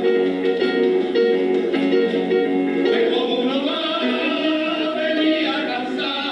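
A group of men singing a song together in chorus, with guitar accompaniment and hand clapping, heard through a television speaker.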